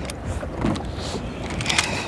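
Fishing tackle being handled: a few light knocks, then a quick cluster of sharp clicks near the end, over a steady low rumble.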